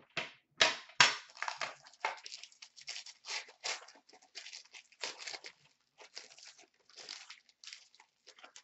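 Foil wrapping of a trading-card pack crinkling and tearing as it is handled and opened, in a run of short crackly bursts that are loudest about a second in, where there is one sharp knock.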